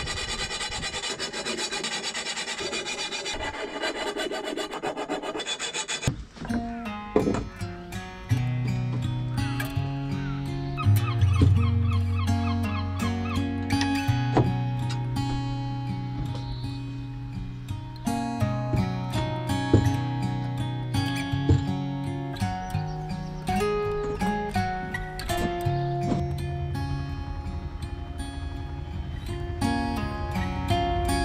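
A hand tool rasping steadily against a stainless steel tube, cutting off suddenly about six seconds in. Instrumental background music with guitar and a bass line follows.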